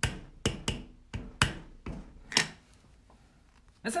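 Clear acrylic stamp block and stamp tapping and clacking against a wooden tabletop as they are handled: about seven sharp taps in quick, uneven succession over the first two and a half seconds.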